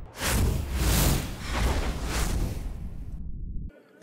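Edited broadcast transition sting: several whooshing sweeps over a deep bass rumble. It cuts off abruptly just before the end.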